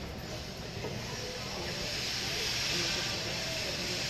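A steady hiss that swells in the middle and eases near the end, with faint background voices.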